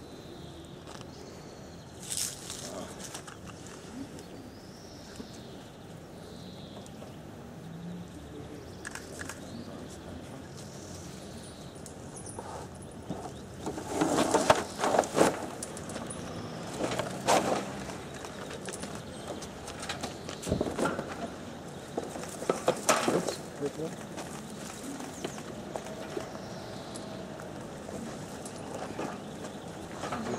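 Background voices of people talking, with a few bursts of knocking and rattling in the middle as a rope net holding framed paintings is hauled up against a tree.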